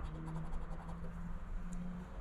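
Soft scraping of a round chip rubbing the coating off a scratch-off lottery ticket.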